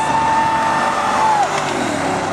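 A car running hard at high revs, with a steady high-pitched whine over it that drops away about one and a half seconds in.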